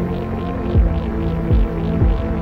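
Electronic music played live on synthesizers: sustained synth chords over a deep kick drum that drops in pitch, hitting twice, with a fast pulsing hiss up high.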